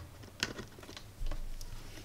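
A few light clicks and taps of test-lead plugs and wires being handled and fitted against a small plastic power box's terminals.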